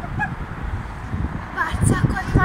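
Geese honking, a few short calls with the clearest near the end, over a steady low rumble.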